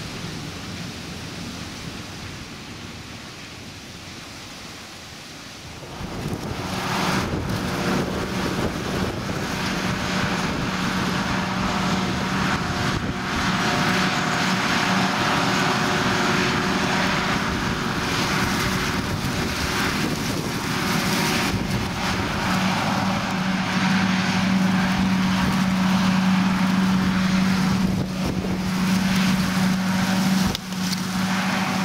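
A John Deere tractor with a silage trailer running past, fairly quiet. About six seconds in it gives way to a louder, steady machine noise with a low hum: a John Deere 7450 self-propelled forage harvester chopping maize into a trailer pulled alongside it. The hum grows stronger in the last few seconds.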